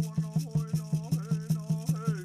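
Native American song: a singing voice over a gourd rattle beaten in a fast, steady rhythm of about five to six strokes a second.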